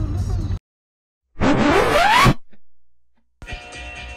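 An editing transition: a rising whoosh sound effect, about a second long, that then fades away, with dead silence either side. Background music starts near the end.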